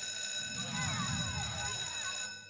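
Electronic class-bell buzzer sounding one steady tone for about two and a half seconds, then cutting off, with a low murmur of voices underneath.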